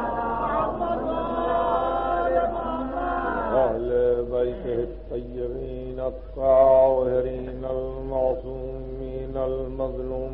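A man chanting the Arabic opening of a sermon in long, held, melodic phrases, with a steady low hum underneath from the old tape recording.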